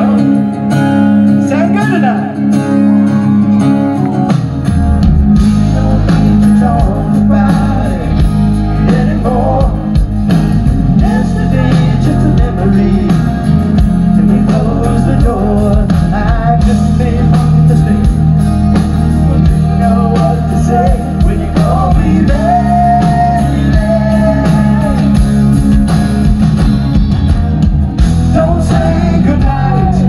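Live rock band playing a power ballad: a male lead vocal over acoustic and electric guitars. The bass and the full low end come in about four seconds in and carry on loud.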